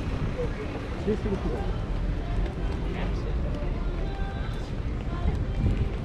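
Street ambience of passersby talking indistinctly, over a constant low wind rumble on the microphone.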